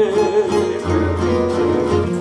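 A trio's acoustic guitars playing a plucked instrumental fill between sung lines of a bolero, with deep bass notes joining a little under a second in.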